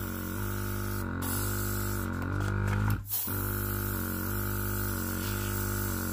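Airbrush spraying thinned white paint, driven by an Oasser compressor: a steady hiss that breaks off briefly a few times as the trigger is let go. Background music with slowly changing held notes plays underneath.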